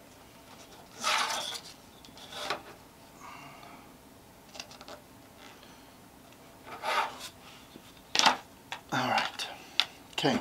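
Paper being creased and folded against the edge of a metal ruler on a wooden tabletop: a handful of short rustles and scrapes, with a sharper knock and scraping near the end as the ruler is moved aside.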